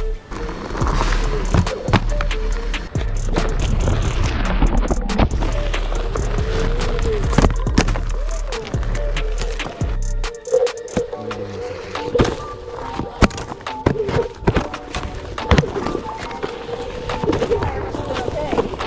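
Background music over Onewheel electric boards riding a dirt trail, with many sharp knocks and scrapes from the boards and tyres on the ground.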